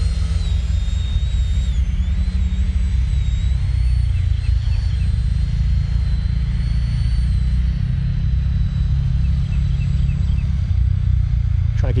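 Thin, high whine of an 80 mm electric ducted fan on a Freewing JAS-39 Gripen RC jet during a slow high-alpha pass. Its pitch steps slightly a couple of times with throttle, over a heavy, steady low rumble.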